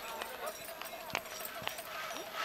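Soundtrack of a projected advertisement heard through a hall's speakers: faint voices of a crowd scene, with two short sharp knocks a little after halfway.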